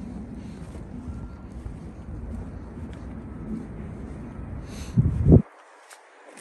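Low wind rumble on the microphone over faint outdoor background noise, with a louder gust about five seconds in, then the sound cuts off suddenly.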